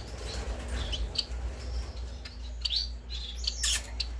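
Caged finches chirping: short high chirps every second or so over a steady low hum, with one brief sharp click-like noise near the end.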